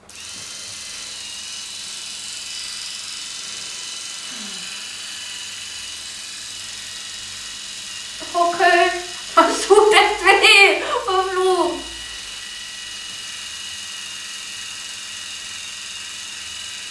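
Braun Face 810 facial epilator switching on at the very start and running with a steady buzzing hum while it is held against the chin to pluck hairs. About eight seconds in, a woman's voice breaks in for a few seconds with pained sounds, louder than the hum.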